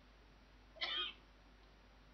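A young woman's single short, wordless vocal noise about a second in, acting out her pained reaction to an extremely sour sweet; otherwise near silence.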